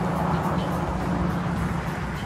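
Small gas engine of lawn-care equipment running steadily at a constant speed, with a low even hum.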